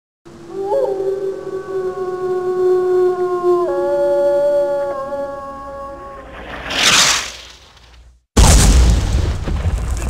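A long, howl-like pitched wail that holds several tones and steps suddenly in pitch twice. About seven seconds in it gives way to a rising whoosh, then a moment of silence, then a sudden loud burst of noise.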